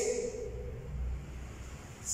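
A man's long held vocal call trailing off in the first half second, followed by a quieter stretch with a faint low rumble.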